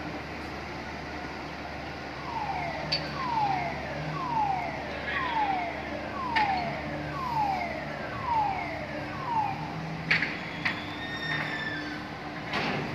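A port crane's warning alarm sounds a falling electronic tone about once a second, seven times in a row, over a steady machinery hum. A couple of sharp metallic knocks come near the end.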